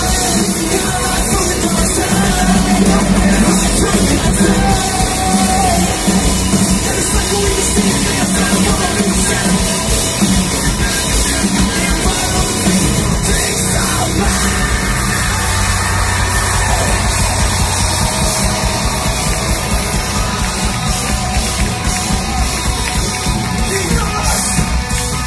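A rock band playing live through a large outdoor PA, loud and continuous, heard from within the crowd through a phone's microphone.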